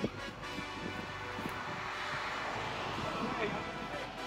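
Steady wind blowing on an open course, swelling slightly toward the middle, with faint background music underneath and a brief tap at the very start.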